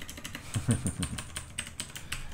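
Typing on a computer keyboard: a quick run of key clicks while code is edited. A brief low vocal sound comes in under the keys about half a second in.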